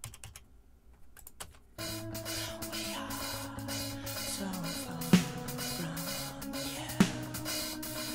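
A few computer-keyboard key clicks in a quiet stretch, then playback of a rock drum-cover mix starting about two seconds in: the drum kit over the backing song, with two loud drum hits near the middle and the end.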